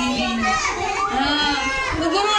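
A group of young children's voices, many talking and calling out at once in an overlapping babble.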